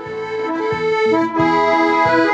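Piano accordion playing a melody of held notes over bass-and-chord pulses about twice a second.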